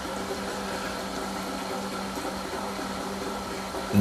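Sous vide immersion circulator running in its water bath: a steady hum of the pump motor circulating the water.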